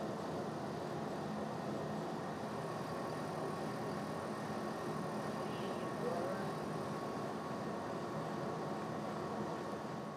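CO2 laser engraver running steadily while it rasters a photo into wood: an even mechanical hum from the machine, with no clear strokes or changes.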